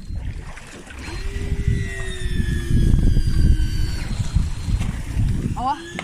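Daiwa Tanacom 1000 electric fishing reel's motor winding in line with a steady whine, sagging slightly in pitch under the load of a hooked fish coming up from the bottom; it starts about a second in and stops near four seconds. Wind noise on the microphone and a low rumble run throughout.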